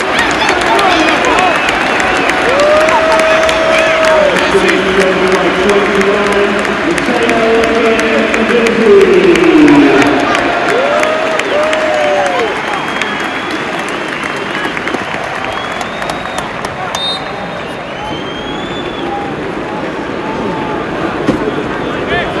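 Large football stadium crowd chanting and applauding, with sung chant lines rising over the crowd noise a couple of seconds in. The chant is loudest about halfway through, then it eases into steadier crowd noise.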